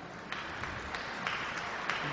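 Large audience applauding: a haze of many hand claps that starts about a third of a second in and builds.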